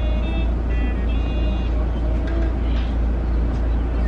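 Steady low rumble of a car's idling engine heard from inside the cabin.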